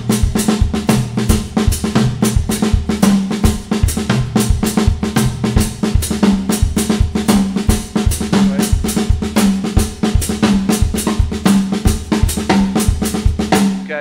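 Acoustic drum kit played in a steady, repeating independence pattern: a foot pattern on the bass drum and a left-hand pattern on the snare, with the right hand adding a single stroke on beat one of each measure, moving between different drums and cymbals.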